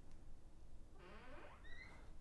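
Quiet room tone, then from about a second in a faint voice humming a few gliding notes.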